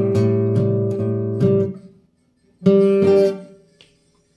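Nylon-string acoustic guitar strumming an A minor 7 chord of the song's accompaniment, struck a few times and left to ring until it fades out about two seconds in. Near the three-second mark a chord is struck twice more and dies away.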